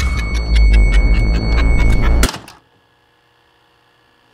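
A loud, deep rumble with dense crackling and a steady high tone over it. It cuts off abruptly a little over two seconds in, leaving only a faint hum.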